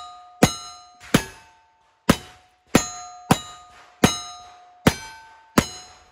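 A pair of Ruger New Model Single-Six .32 H&R revolvers fired with black-powder loads in quick succession: eight sharp shots, about one every three quarters of a second. Each shot is followed by the ringing of a struck steel target.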